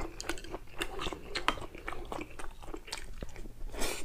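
A man chewing grilled galbi ribs close to a lapel microphone: wet mouth clicks and smacks at an uneven pace, with a brief louder breathy sound near the end.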